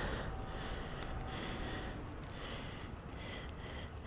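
A BMX bike rolling on asphalt: steady tyre and road noise with wind rumbling on a helmet-mounted mic.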